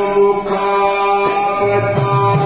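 Evening aarti devotional music: chanting over one long, steady held note.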